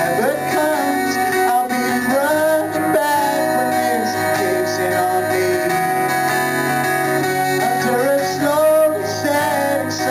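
Acoustic guitar strummed, with a man singing over it in places.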